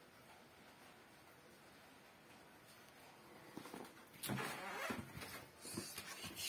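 Quiet room tone, then from about three and a half seconds in a few irregular bursts of rustling and handling noise, the loudest about four seconds in and another just before the end.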